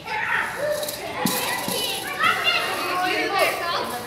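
Young children's voices, chattering and calling out as they play.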